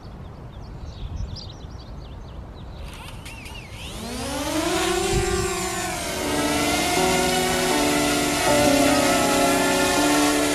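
Background music with held, stepping notes comes in about six seconds in. Just before it, a pitched whine rises and then falls over about two seconds.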